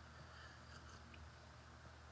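Near silence: room tone with a faint steady low hum and a few faint soft ticks.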